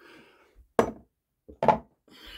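Two sharp knocks, under a second apart, as a glass aftershave bottle is handled and set down on a hard surface.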